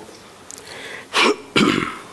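A man clearing his throat twice in quick succession, close to a lectern microphone, in two short, loud coughs a little past the middle.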